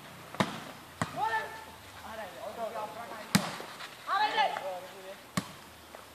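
A volleyball being struck by players' hands: four sharp slaps spread over several seconds, the third the loudest, with players' calls and shouts in between.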